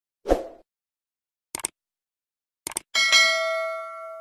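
End-card sound effects for an animated subscribe button: a short whoosh, two quick clicks, then a bright bell ding about three seconds in, the loudest sound, ringing on and fading over a second and a half.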